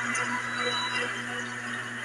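Live-venue ambience through a sound system: a steady low electrical hum under a faint, even wash of hall and audience noise.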